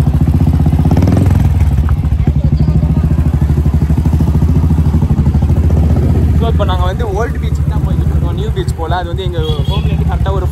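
Royal Enfield Bullet motorcycle's single-cylinder engine running steadily under way, heard from on the bike, with its even low pulsing beat.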